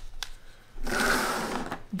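A few light clicks, then about a second of dense, rapid rattling as a handful of plastic Posca paint markers clatter together in the hand.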